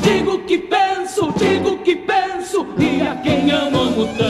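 Music: several voices singing together in a Gaúcho regional folk song, with light instrumental backing underneath.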